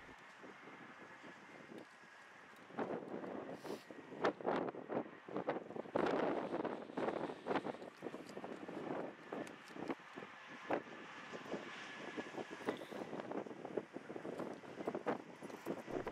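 Gusty wind buffeting the microphone, with highway traffic passing. The wind is the storm's inflow blowing toward the wall cloud. After a quieter first couple of seconds, the gusts come in uneven swells with sharp buffets.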